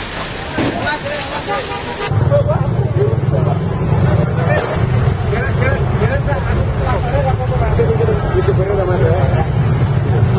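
Outdoor crowd noise and voices, cut off about two seconds in by a steady low engine drone inside a truck's cab, with people talking over it.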